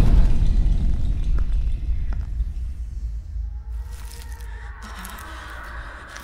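Horror film trailer soundtrack: a deep low rumble that fades away steadily, with a faint high held tone coming in near the end.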